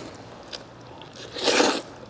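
A person eating jjajangmyeon noodles: faint eating noises, then one noisy slurp of noodles lasting about half a second near the end.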